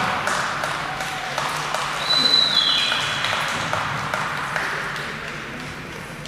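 Spectator applause in an ice rink, dying away, with a brief high whistling tone that slides down in pitch about two seconds in.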